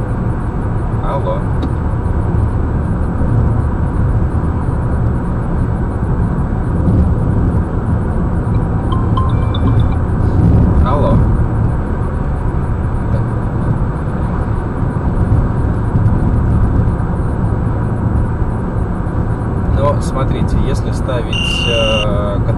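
Steady low road rumble inside a car cruising on a highway: tyre and engine noise carried through the cabin, with faint snatches of voice now and then.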